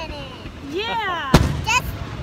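Fireworks going off overhead: one sharp boom about a second and a half in, amid a string of bursts.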